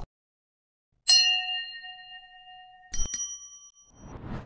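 Bell-ding sound effects from an animated like-and-subscribe button overlay. A ding rings out about a second in and fades over nearly two seconds. A click and a second, brighter ding follow near the three-second mark and ring for about a second.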